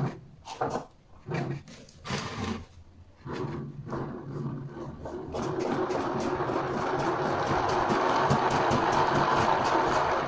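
Homemade generator rotor, built in an old fridge compressor motor housing, spun by hand with repeated swipes of the palm along the shaft. The first few seconds are separate strokes. From about five seconds in there is a steady whirring with fast ticking as the rotor spins up, growing slightly louder.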